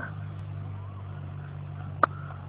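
A steady low hum with an even hiss over it.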